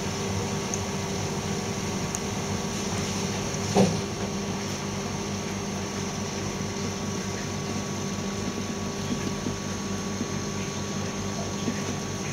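Steady hum of reef aquarium pumps with a faint wash of water, holding one level, and a single short knock about four seconds in.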